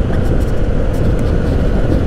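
Honda ADV 150 scooter's 150 cc single-cylinder engine and CVT running at a steady cruise of about 50 km/h, with road and wind noise rushing over the rider-mounted microphone.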